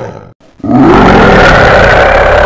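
Tiger roar sound effect. The tail of one roar fades at the start, and after a brief gap a second long, loud roar begins just over half a second in.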